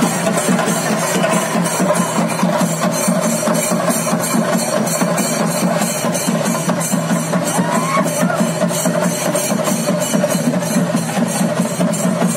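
Ritual festival drumming: chenda drums beaten in a fast, even, unbroken rhythm, with a bright metallic ring from cymbals over it, at a steady loud level.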